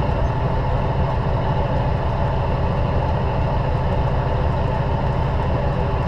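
Semi truck's diesel engine running, heard from inside the cab as a steady low rumble.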